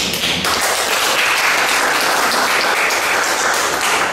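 A room of people applauding, a steady dense patter of handclaps that starts suddenly.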